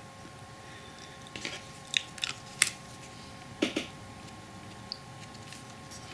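A few light clicks and taps from copper wire and small hand tools handled on a workbench, with one sharper click about two and a half seconds in.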